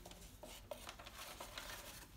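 Quiet handling of paperwork and a plastic sample tub in a small cardboard box: faint rustling with a few light knocks.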